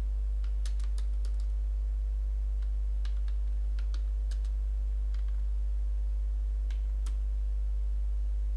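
Computer keyboard being typed on, keystrokes coming in short irregular clusters, over a steady low hum.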